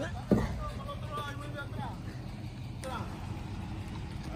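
Pickup truck engine idling steadily, with distant voices talking faintly over it and one sharp knock about a third of a second in.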